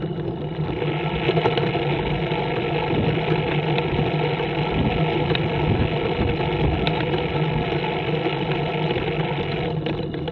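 Scorpion trike's engine running while the trike drives along a road: a steady low hum under a broad rushing noise, which grows a little louder about a second in.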